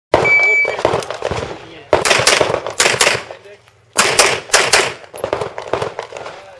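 An electronic shot timer beeps once at the start, then a handgun fires in quick strings of shots, one cluster about two seconds in and another about four seconds in.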